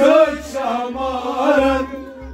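Men singing a Sufi kalam in a chant-like style, accompanied by a bowed string instrument, with a low regular beat underneath. The singing phrase dies away near the end.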